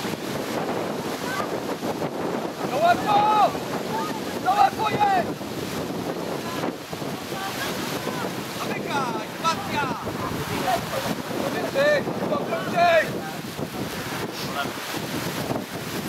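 Wind buffeting the microphone, a steady rumbling noise throughout. Several short shouted calls from voices come through it, around three and five seconds in, again near nine seconds, and twice around twelve to thirteen seconds.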